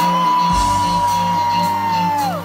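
Live band playing a steady dance groove with drums, bass and keyboards, while a single high voice holds one long 'woo' over it.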